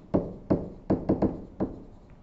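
A digital stylus tapping and clicking against its writing surface while handwriting: about seven short, sharp taps at uneven spacing.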